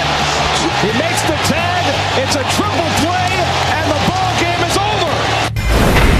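Excited sports broadcast commentary over background music with a steady low beat; just after five and a half seconds the sound cuts off sharply and a short burst of noise follows, a transition effect into the next segment.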